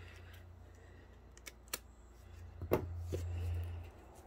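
A few small clicks and crackles of fingers picking at the cellophane wrap on a small cardboard box, over a low rumble.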